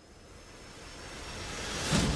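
A whoosh transition sound effect: a rush of noise that swells steadily louder and brighter over about two seconds, rising into the next segment.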